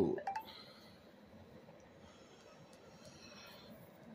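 A few light clicks of handling just after the last word, then faint, steady room tone.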